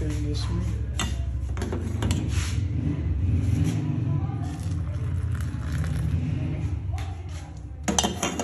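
A steel ladle clinking and scraping against a saucepan of boiled milk a few times, over a steady low hum.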